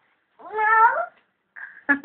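A toddler's short whiny cry of protest, a single pitched, slightly rising wail under a second long that sounds much like a cat's meow.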